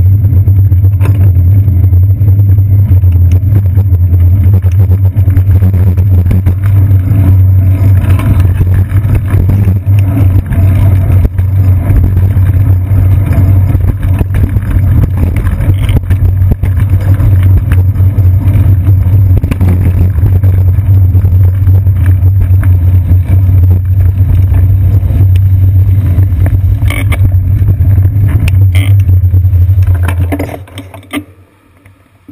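Loud, steady low rumble of wind and road vibration picked up by a GoPro camera mounted on a moving bicycle's seat post.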